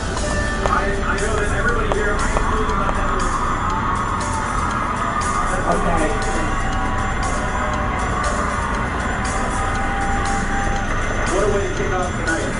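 Television talent-show audio playing through a speaker in the room: music with a voice over it, steady throughout.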